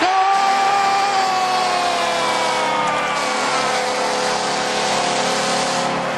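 Hockey arena goal horn sounding for a home-team goal, long and steady over crowd noise, a few of its tones sinking slightly in pitch as it goes.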